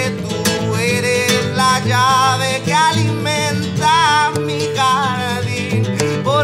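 Live song: a nylon-string classical guitar played with a man singing over it, his voice holding long wavering notes through the middle.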